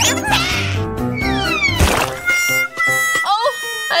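Slapstick sound effects: a quick rising swoosh, then a whistle gliding down that ends in a smack about two seconds in as a pizza hits a face, followed by a held musical chord.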